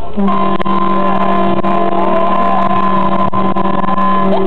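Ship's horn of a Medmar ferry giving a salute: one long, steady blast in several tones at once. It starts just after the opening and is held throughout.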